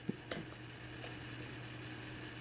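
A couple of faint clicks from laptop keys being pressed, the Escape, Refresh and Power key combination that forces a Chromebook into recovery mode, followed by a low steady hum of room tone.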